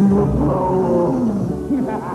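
Cartoon soundtrack: a growling, animal-like roar that starts suddenly, with orchestral music under it.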